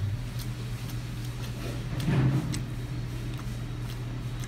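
A person eating at a table: faint fork taps and chewing over a steady low room hum, with a brief murmured voice about two seconds in.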